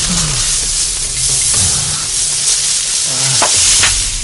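Action-film sound effects: a steady hiss of dust and gravel settling after a quarry blast, over low falling tones, with two sharp cracks near the end.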